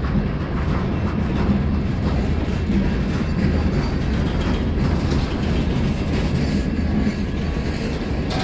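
Freight cars rolling past close by: a steady rumble and clatter of steel wheels on the rails.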